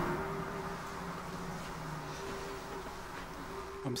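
A low, steady hum over faint hiss, its tones fading in and out; a man's voice starts just before the end.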